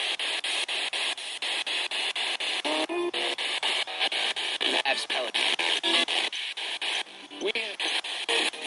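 Spirit box radio sweeping rapidly through stations, chopped about five times a second. Each slice holds a split-second burst of static or a scrap of broadcast voice or music.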